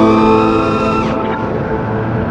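Background music with sustained chords over the high whine of an FPV quadcopter's motors. The whine rises in pitch, then drops away sharply about a second in, as the throttle comes off.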